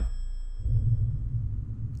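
A low, steady bass drone that swells about half a second in, with a few faint high tones dying away at the start.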